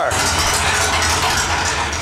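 A steady low machine hum with an even hiss over it; it stops abruptly at the end.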